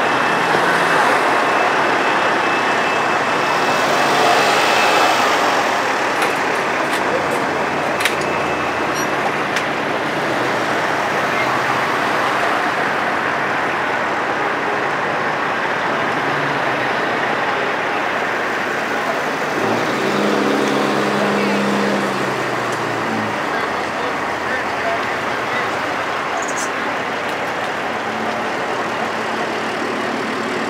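Truck-show ambience: diesel truck engines idling steadily, with background voices. About twenty seconds in, a deeper engine note swells and holds for around three seconds, and there is one sharp click about eight seconds in.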